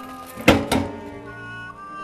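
A sharp metal clunk about half a second in, with a lighter knock just after: the rotisserie spit and its end wheels knocking against the countertop rotisserie oven as the chicken is lifted out. Soft background music plays underneath.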